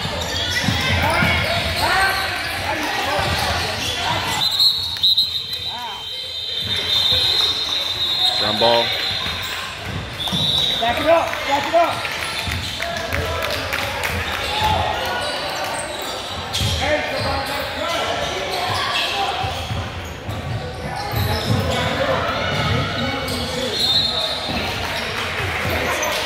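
Basketball bouncing on a hardwood gym court amid players' and spectators' voices, echoing in a large hall.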